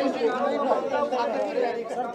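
Several voices talking over one another in a hall: reporters calling out questions at the same time.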